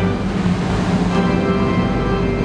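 Music of sustained pipe organ chords over a faint hiss, with a new chord sounding about a second in.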